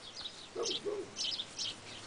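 Birds chirping in quick, repeated high notes, with two short, low cooing notes just after half a second in.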